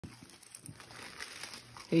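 Christmas wrapping paper crinkling and tearing faintly and unevenly as a dog noses and pulls at it with his mouth.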